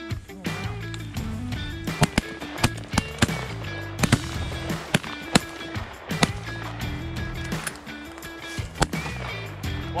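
Background music: a track with a stepping bass line and sharp percussive hits.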